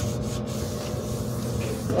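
A soapy sponge rubbing back and forth over the laminate inside of a wardrobe, a steady scratchy scrubbing. Under it runs the steady hum of a washing machine.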